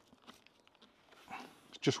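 A quiet pause filled with faint small clicks and rubbing from a hand moving an Arai Tour-X5 motorcycle helmet on a wooden table, with one soft swell of noise about halfway.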